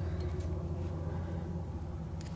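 A steady low background hum with no knocks or tool clinks.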